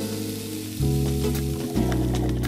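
Whole button mushrooms sizzling in hot oil in a skillet, under background music whose chords change twice.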